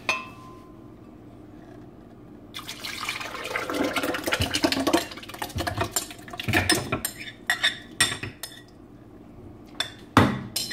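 Soaked oats and water being poured into a glass blender jar. The pouring and splashing start about two and a half seconds in and settle after about seven seconds, with a few sharp clinks against the glass near the end.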